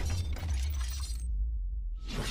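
Cinematic sound-design effects: a deep, steady low rumble with a higher, shattering crackle over it that cuts out about a second and a quarter in, leaving only the rumble.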